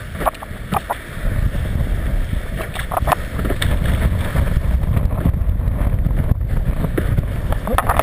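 Wind buffeting the microphone of a board-level camera as a kiteboard skims over choppy water, a heavy rumble that builds about a second in. Sharp slaps and spatters of water spray and chop hitting the board and camera come through on top of it.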